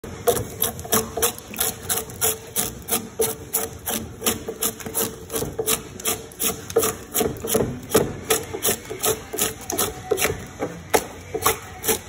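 Drawknife stripping bark from the edge of a live-edge wood slab in quick, even pull strokes, about three a second, each a short scrape of steel on bark and wood.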